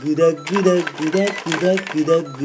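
Male voices singing a repetitive 'gudaguda' jingle, the syllables held on stepped notes in a sing-song rhythm, with light clicks throughout.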